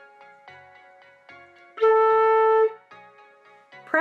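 A single concert flute note, clear and steady, held for just under a second about two seconds in, over soft background music.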